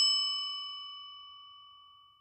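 A single ding of a hotel desk bell, struck once and ringing out, fading away over about a second and a half.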